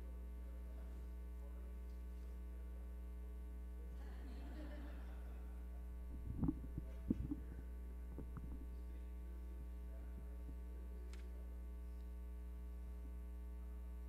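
Steady electrical mains hum in the audio feed, a low buzz with many overtones. A brief cluster of low thumps comes about halfway through.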